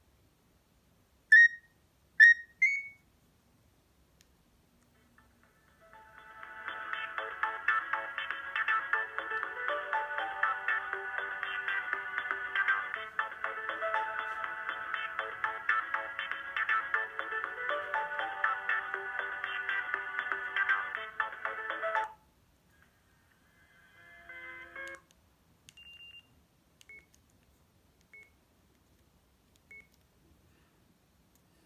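Sagem myC2-3 mobile phone: a few short key beeps, then a polyphonic ringtone melody plays for about sixteen seconds through the phone's small speaker and cuts off suddenly. A few faint key beeps follow near the end.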